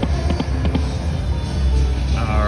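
Dragon Unleashed – Prosperity Packets video slot machine spinning its reels: game music with a run of short ticks and brief chiming notes as the reels turn and stop, over a steady low hum.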